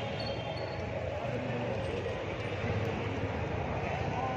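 Steady street-market background noise: a low rumble of traffic with faint voices of people around.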